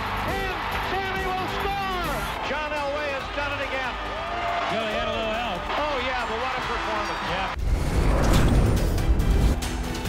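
Excited broadcast commentary over a cheering stadium crowd, then about seven and a half seconds in a sudden louder graphic-transition hit with a whoosh and music.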